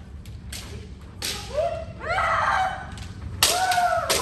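Kendo practitioners in armour striking the dō with bamboo shinai: a few sharp cracks of strikes and stamps, then several long, overlapping kiai shouts. The loudest shout comes near the end, and all of it echoes in the large hall.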